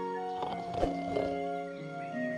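Orchestral film score with long held notes, and a short thump just before halfway through.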